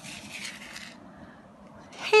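Faint rustle of a hand brushing over the paper page of a picture book, in the first second, over low room noise.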